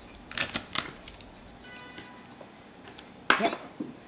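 Knife cutting through a rainbow trout's head on a cutting board: a quick run of sharp clicks and cracks early on, then a few single clicks.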